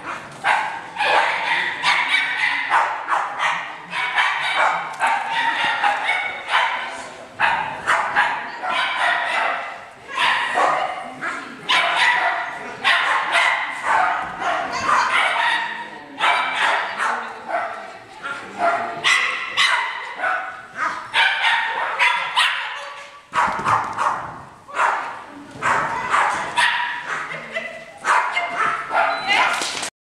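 A dog barking and yipping over and over, two or three barks a second, with brief pauses, while people's voices carry underneath.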